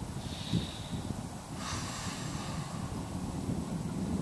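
Steady wind rumble on the microphone, with one audible exhaled breath about one and a half seconds in while a seated twist is held.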